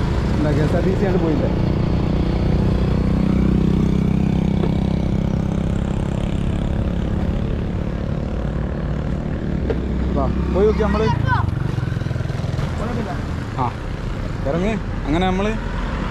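Steady engine and road noise from a motor scooter ride and passing traffic, swelling a few seconds in and dropping away about two-thirds through. A man's voice follows near the end.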